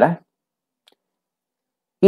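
A man's voice ends a phrase right at the start, followed by near silence broken by one faint, short click a little under a second in.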